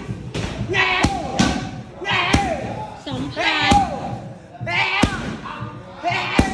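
Punches and kicks landing on leather Thai pads: about five sharp smacks roughly a second apart, with shouted calls and grunts between the strikes.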